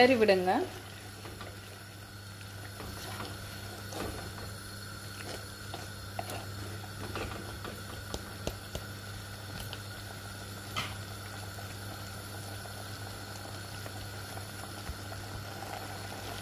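Beetroot curry in coconut milk simmering and bubbling in a clay pot, with scattered light clicks of a wooden spoon stirring it. A steady low hum runs underneath.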